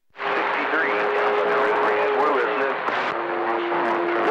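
CB radio receiver on channel 28 (27.285 MHz) picking up a weak, noisy over-the-air signal after a brief silent break: loud static hiss with a steady low tone, and faint garbled voices beneath it. The tone drops slightly in pitch a little after three seconds in.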